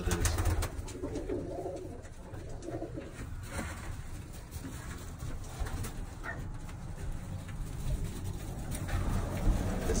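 Birmingham roller pigeons cooing in their nest boxes, with a few scattered clicks.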